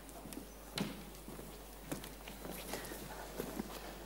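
Faint footsteps of a man walking across a stage, as a few soft irregular steps, the clearest about one and two seconds in.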